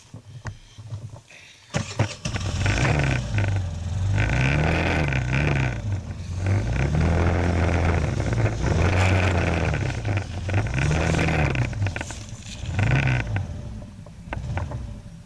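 Motor scooter engine starting about two seconds in, then revving up and falling back several times as the scooter gets under way.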